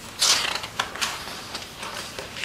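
A page of a large paper coloring book being turned: a loud swish of paper a fraction of a second in, then a few short crackles as the sheet settles.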